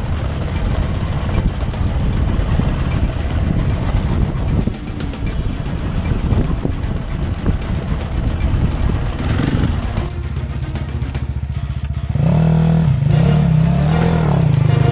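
Enduro dirt bike engine running under changing throttle over rough, rocky trail. About twelve seconds in, the engine note becomes louder and clearer, rising and falling in pitch.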